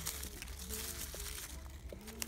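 Hands digging through dry fallen leaves and damp soil, the leaves rustling, with a few small clicks.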